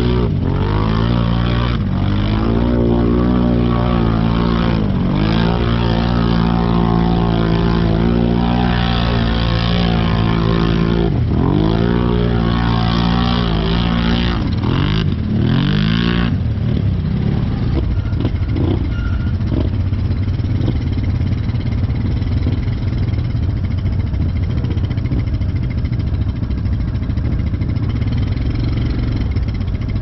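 ATV engine revving hard as it pushes through deep water, its pitch rising and dipping with the throttle for about the first sixteen seconds. It then fades, leaving a low steady rumble.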